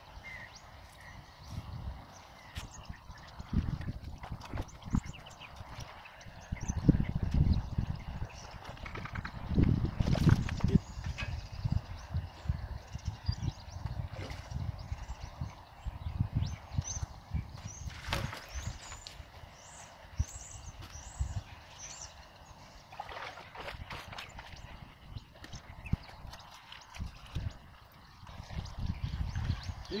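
Irregular low thumps and splashes of someone wading through shallow water at the bank, bunched most thickly a quarter to a third of the way in, while a hooked carp is brought to the landing net.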